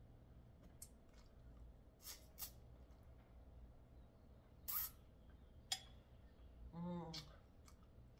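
Faint mouth sounds of a person eating noodles: a handful of short, soft smacks and clicks while chewing, and a brief hummed "mm" near the end, over a low steady room hum.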